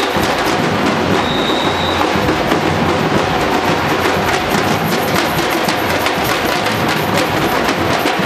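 Street percussion band drumming a fast, dense rhythm at a steady loudness.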